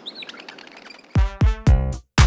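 Faint birds chirping over a soft outdoor background, then about a second in music starts with a quick run of loud, punchy hits.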